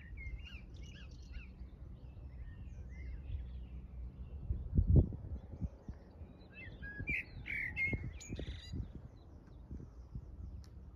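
Small birds chirping and singing, many short overlapping calls, busiest near the end, over a steady low rumble. A single dull thump about halfway, louder than the birds, and a few softer knocks later.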